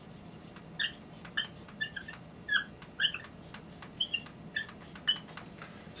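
Dry-erase marker squeaking on a whiteboard as a structure is drawn, about ten short, high-pitched squeaks, one per pen stroke.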